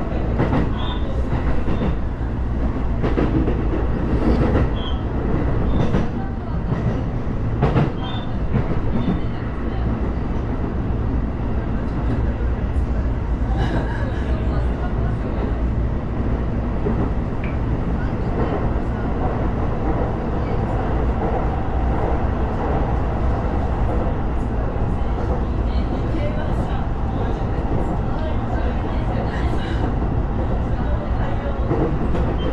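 Sotetsu electric commuter train heard from inside the passenger car: a steady rumble of wheels on rail, with sharp clicks from the track scattered through the first several seconds. The train slows to about 30 km/h and then gathers speed again.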